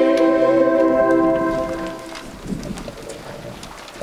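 A choir holds a final sung chord that fades out about one and a half seconds in. Low background noise follows.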